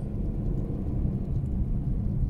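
A car driving along a street: a steady low rumble of engine and road noise.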